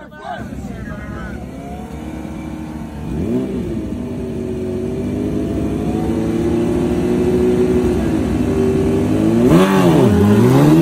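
Two Suzuki sport bikes, a Hayabusa and a 2004 GSX-R1000, revving at the start line. There is one rev up and back down about three seconds in, then the engines are held at steady high revs that climb slowly. Just before the end the revs dip and then rise sharply as the launch begins.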